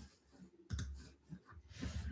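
A few scattered light clicks and taps of small objects being handled on a desk.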